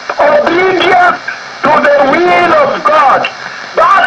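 Speech only: a preacher's voice heard over a radio broadcast, with two short pauses.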